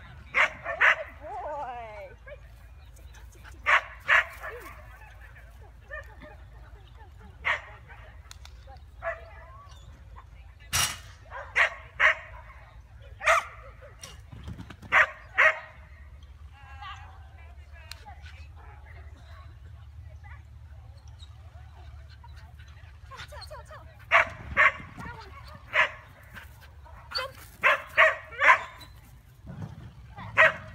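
A dog barking in short, sharp bursts, in irregular clusters: a few near the start, a run a third of the way in, then a rapid string of barks near the end after a quieter stretch in the middle.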